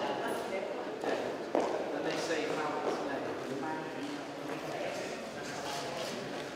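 Indistinct chatter of several people in a large, echoing gallery hall, with footsteps and a few sharp knocks on the wooden floor.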